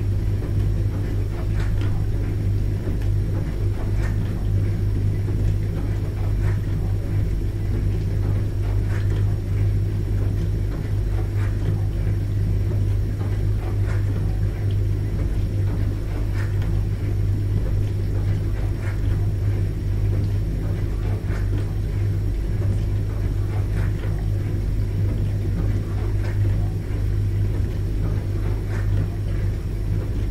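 Dishwasher running mid-cycle: a steady low hum with faint, irregular ticks scattered through it.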